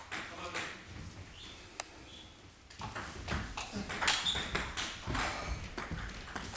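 Table tennis rally: the celluloid ball clicking sharply off the bats and table in quick, uneven succession, with a sparser stretch in the first few seconds and a dense run of hits after about three seconds.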